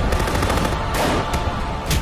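Rapid gunfire in a dense run of shots, with heavier blasts about a second in and near the end, over dramatic trailer music.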